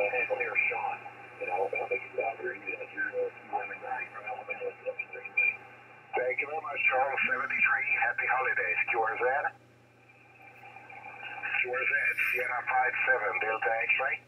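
Single-sideband voice traffic on the 20 m amateur band heard through an Icom IC-7610 transceiver: thin, narrow-band, hard-to-follow speech over a steady low hum. The voices break off for about two seconds after two thirds of the way, then another voice comes in.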